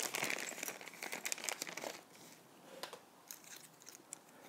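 A small clear plastic bag crinkling as it is handled, with light clicks from the small screws and nuts inside it. The sound is busiest in the first two seconds and thins to a few scattered ticks after that.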